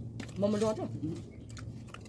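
Mouth sounds of people eating soft steamed chicken momos: chewing and small wet clicks and smacks. A short voiced sound comes about half a second in, the loudest moment.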